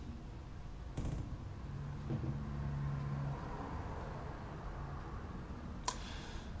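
Quiet room tone of low hiss and hum, with a soft click about a second in and another near the end.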